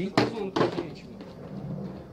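Green plastic bucket falling over and knocking on a tiled floor: two sharp knocks about half a second apart.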